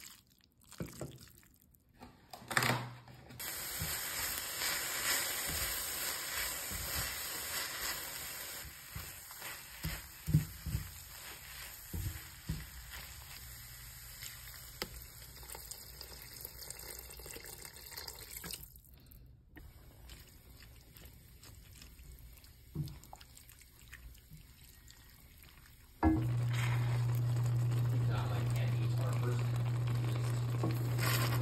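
Home cooking at a stainless steel pan, in short cuts: a steady sizzling or watery hiss, liquid poured and stirred, and scattered knocks of a spatula against the pan. Near the end a steady low hum starts suddenly and is the loudest sound.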